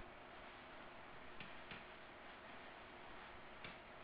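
Near silence, with a low hiss and a few faint, irregular clicks of a stylus on a pen tablet as handwriting is written.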